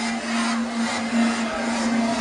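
Electronic club music at a breakdown: the kick-drum beat drops out, leaving one held low synth note under a dense, steady noisy wash.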